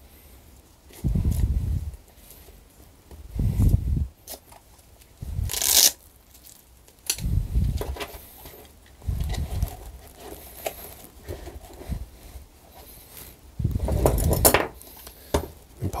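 Hand tools being pushed into a nylon belt pouch: muffled bumps and rustling of the fabric, light clicks of metal and plastic tools, and a short rasping scrape about six seconds in.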